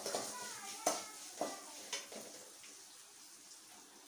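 A metal ladle knocks and scrapes several times against an aluminium kadai during the first couple of seconds while a tempering of mustard seeds, curry leaves and crushed garlic sizzles in hot oil. The sizzle fades toward the end.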